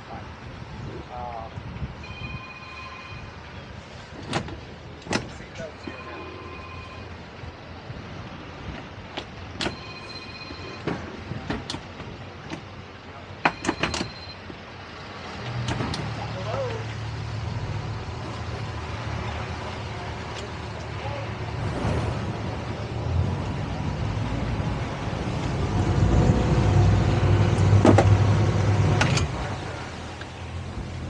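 Twin Suzuki outboard engines start about halfway through and run at idle, then grow louder near the end as the boat gets under way. Before they start there are a few short electronic beeps and scattered knocks.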